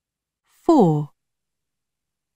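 A single short spoken word with falling pitch, the test narrator announcing the next question number, "Four".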